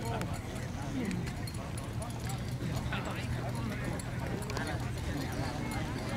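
Hooves of two horses walking on a dirt racetrack, soft irregular clip-clop, under distant people talking and a steady low hum.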